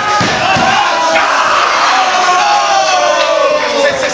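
Wrestling crowd shouting and cheering, many voices yelling at once, with a few low thuds in the first half-second.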